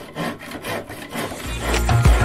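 Intro sound design: short, scratchy pencil-sketching strokes, about four a second. About one and a half seconds in, music swells in under them with a deep bass.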